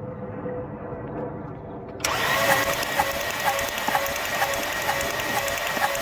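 Volkswagen Jetta engine cranked over by its starter for a compression test. The cranking starts abruptly about two seconds in and keeps up an even, rhythmic beat. The cylinder under test reads only about 50 psi, which the mechanic puts down to a blown head gasket.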